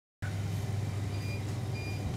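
Shop ambience: a steady low hum, with two short high electronic beeps about half a second apart in the middle.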